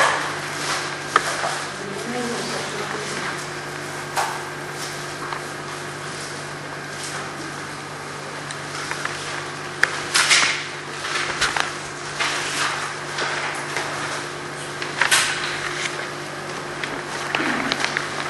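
Paper rustling and pages being turned as a songbook and a plastic folder are leafed through, with small clicks and two sharper rustles about ten and fifteen seconds in, over a steady low hum and faint murmured voices.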